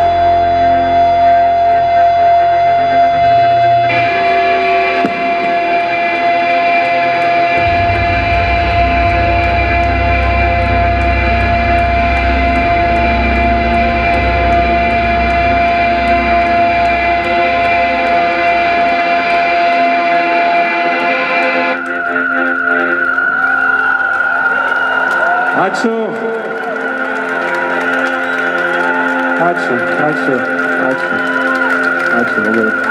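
Live band holding a sustained drone with no beat: steady keyboard and effected guitar tones over a deep bass drone. The bass drone comes in about eight seconds in and cuts out around twenty-two seconds, after which a higher held tone carries on with wavering sounds over it.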